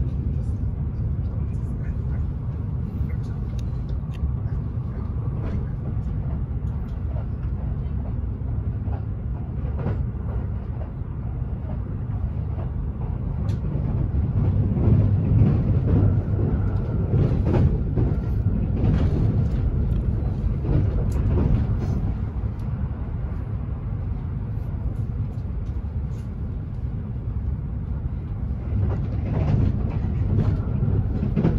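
Running noise of a Kintetsu 80000 series "Hinotori" limited-express train at speed, heard inside the passenger cabin: a steady low rumble with scattered short clicks from the wheels on the rails. The noise swells louder for several seconds midway.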